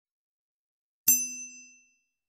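A single bright metallic ding, struck once about a second in, its high ringing tones over a lower tone fading away within about a second.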